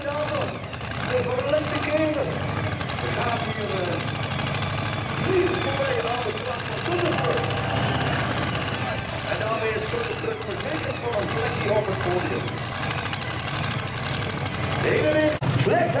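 A large engine idling with a steady low rumble, with voices talking over it.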